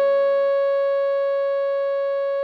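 Clarinet holding one long E-flat (Eb5) note, fading slowly. A backing chord underneath drops out about a quarter of the way in, leaving the clarinet tone alone.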